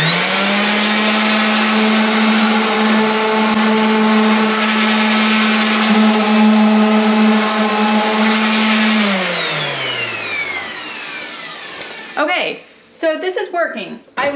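DeWalt random orbital sander with 120-grit paper starting up and running steadily against a painted drywall wall for about nine seconds, then switched off and winding down with a falling whine.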